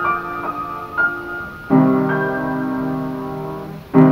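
Upright piano playing a slow melody of single notes, then a full chord struck a little under two seconds in and left to ring, slowly fading.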